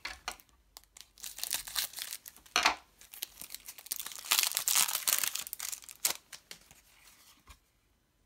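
Foil trading-card booster packet being torn open and crinkled by hand in several rips. The longest and loudest tear comes about four seconds in, then smaller crinkles fade out near the end.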